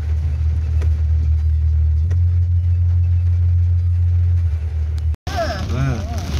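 Steady low rumble of a car's engine and running gear heard from inside the cabin. It cuts off abruptly about five seconds in, and a voice follows.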